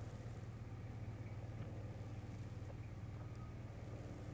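Faint, steady low rumble and hiss of outdoor background noise, with no distinct event.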